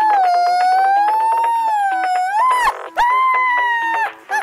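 A woman's long, high-pitched scream of delight, held for about two and a half seconds, then a second shorter one, over music with a steady beat.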